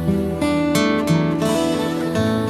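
Background music: acoustic guitar playing steady strummed and plucked chords.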